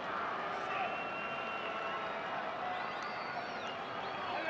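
Football stadium crowd noise: a steady mass of many voices from the stands.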